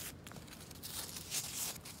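Fingers digging through loose soil in a plastic tub: faint rustling with a few short scratches about a second in.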